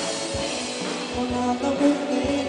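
Live band music from a jovem guarda rock group on stage: electric guitar and drums playing a song with a steady beat under held notes.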